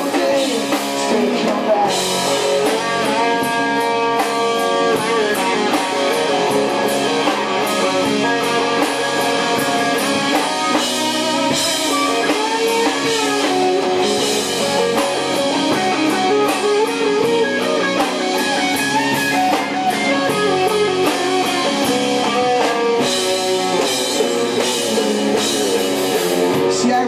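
Live rock band playing an instrumental passage: electric guitars over a drum kit, loud and steady throughout.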